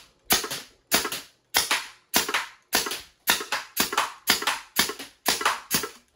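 3D-printed semi-automatic HPA (high-pressure air) foam-dart blaster firing shot after shot, emptying its magazine. Eleven sharp pops come at an even pace of just under two a second, each a sudden burst of released air that fades quickly.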